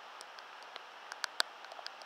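Rain falling with a steady hiss, broken by irregular sharp ticks of drops landing close to the microphone. The loudest tick comes about halfway through.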